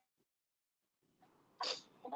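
Near silence, then one short breathy burst from a person near the end, a sharp exhale or huff of breath.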